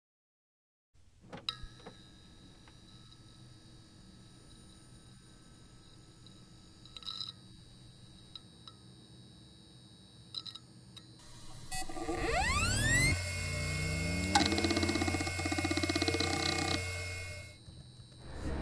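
Electronic sound effects. Silence gives way to a quiet steady background with a few faint clicks. From about twelve seconds, a rising electronic sweep leads into a loud, pulsing buzz of tones that cuts off just before the end.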